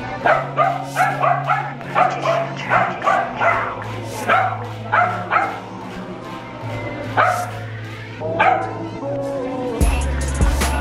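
A dog barking in quick short yips, about a dozen in the first five seconds and two more later, over steady background music.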